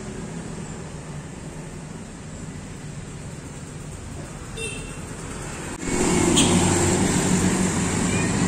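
Faint, steady outdoor background noise, then an abrupt jump about six seconds in to much louder street traffic, with motorbikes and cars passing, picked up by a phone's built-in microphone.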